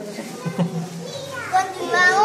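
Children's voices in a crowd: brief chatter, then a high-pitched child's voice calling out near the end, over a steady low hum.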